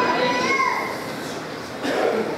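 A small child's high voice calling out in one long held sound that bends upward at its end, about half a second in, followed by quieter hall sound and a sudden louder sound just before the end.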